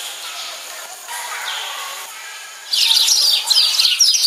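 Faint indistinct voices, then, about two-thirds of the way in, loud chirping of many birds starts suddenly, with quick overlapping high calls.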